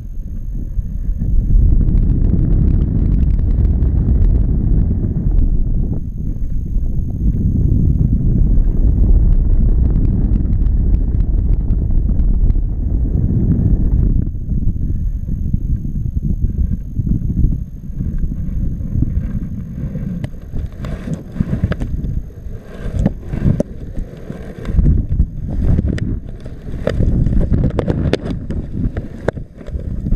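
Wind rushing over an action camera's microphone in paraglider flight: a loud, low, steady rumble that turns gusty and choppy over the last ten seconds, with short sharp pops as the airflow buffets the mic.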